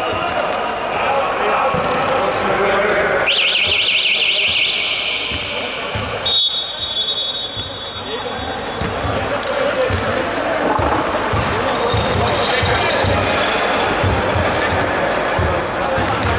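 A referee's pea whistle blown as a short warbling trill a few seconds in. A steady high tone follows about six seconds in and lasts a second and a half. Under it, a basketball bounces on the hardwood court and players' voices echo in the large hall.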